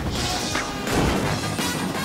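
Cartoon crash sound effects over action music: a rushing noise at the start, then a heavy impact about a second in.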